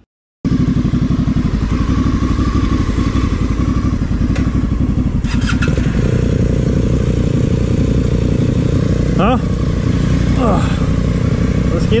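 Honda Africa Twin adventure motorcycle's parallel-twin engine running steadily, heard close up from the rider's helmet.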